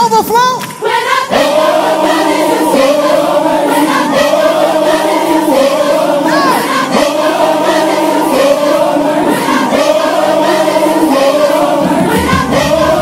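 Gospel choir singing a short phrase over and over in held chords with low sustained notes beneath, coming in about a second in after loud crowd shouting.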